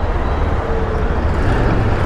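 Steady road and wind rumble on a moving scooter's camera microphone as it rolls slowly through city traffic beside a bus and an auto-rickshaw.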